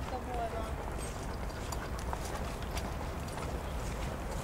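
Faint hoofbeats of several horses walking on grass, over a steady low rumble, with a faint distant voice just after the start.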